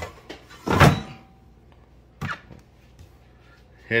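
Air fryer basket pushed back into a Gourmia air fryer, shutting with a thunk about a second in, then a lighter knock a little over a second later.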